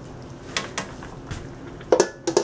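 Metal tongs clicking a few times against a wok of simmering ribs, then a stainless-steel dome lid set down on the wok with a sharp clank and a short ring near the end.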